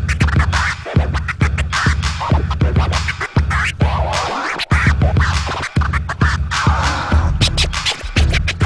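Two DJs scratching vinyl records on turntables over a heavy hip hop beat, the record sounds gliding up and down in pitch. The sound is chopped by sudden short cuts from the mixer's crossfader.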